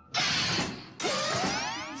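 Cartoon sound effects: a mechanical ratcheting, whirring sound in two parts of about a second each, the second sweeping upward in pitch.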